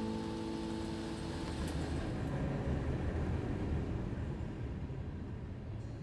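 The final chord of an acoustic guitar rings out and fades away over the first second or two. It leaves a low rumble that swells slightly and then eases off.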